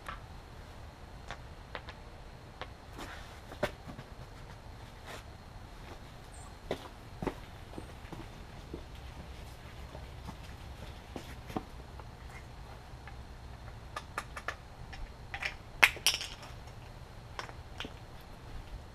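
Scattered light metallic clicks and knocks from wheel-changing work: lug nuts being taken off by hand and a wheel and tyre being handled. A cluster of louder knocks comes about 14 to 16 seconds in, over a steady low background.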